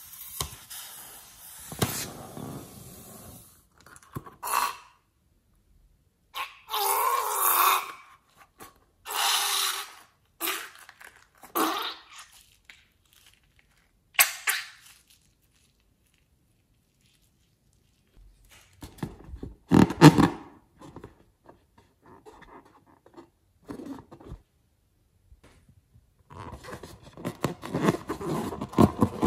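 Thick, wet slime ingredients gushing from a cut balloon into a glass bowl and being stirred, heard as wet squelching in separate bursts with quiet gaps between them. Near the end comes a run of crackly rubbing as a rubber balloon is handled.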